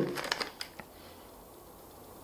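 A few soft clicks as a plastic spray bottle is handled in the first second, then quiet room tone in a small room.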